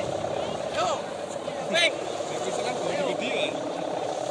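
Steady buzzing drone of kite hummers (sendaren) on kites flying overhead, holding one pitch throughout, with a few short shouts from people nearby.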